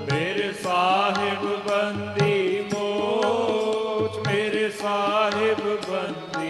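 Shabad kirtan: male voices singing a winding devotional line over two harmoniums holding sustained chords, with tabla strokes and low bass thuds keeping a steady rhythm.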